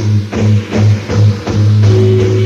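Blues-rock band playing an instrumental passage: a repeating low guitar and bass riff, about two notes a second, over drums.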